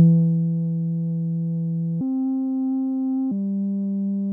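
Music sting of sustained synthesizer tones starting suddenly: a low held note that steps up to a higher one about two seconds in, then down to a middle note near the end.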